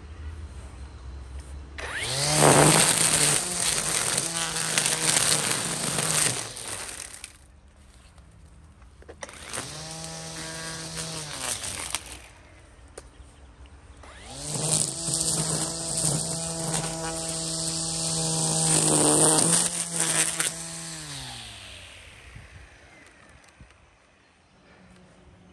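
EGO battery-powered string trimmer run in three bursts, the last the longest. Each burst spins up with a rising whine, the line hisses and slaps through weeds, and the motor winds down with a falling pitch.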